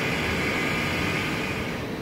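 Steady machine noise like a fan or air handler, with a faint steady high whine running through it.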